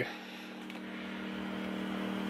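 A faint, steady mechanical hum made of a few low, unchanging tones, which grows slightly louder.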